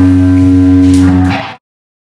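A live rock band holds a sustained, ringing chord, with two cymbal crashes about a second in. The sound then fades quickly and cuts to silence about one and a half seconds in.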